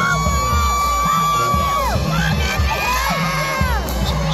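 Marching band playing on the field with the crowd cheering and whooping. Two long high notes are held, the first for nearly two seconds and the second near the end, each bending down as it stops, over an uneven low pulsing beat.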